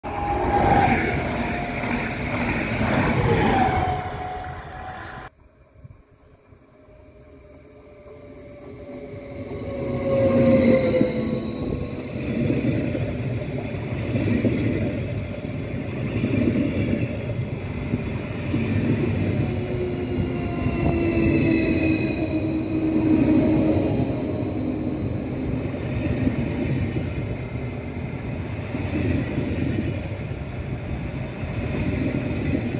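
Electric multiple-unit trains passing close by on the track. The first passage cuts off suddenly about five seconds in. Then a train is heard approaching, growing loud about ten seconds in and running past with a steady rumble of wheels on rails and whining tones that slide in pitch.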